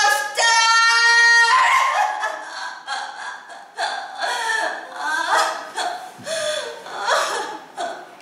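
A woman's voice acting out madness: a high wail held for about a second near the start, then broken, uneven bursts of crying and laughter.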